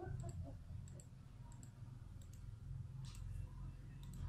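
Computer mouse clicking, in quick pairs spread every half second to second, over a faint low steady hum.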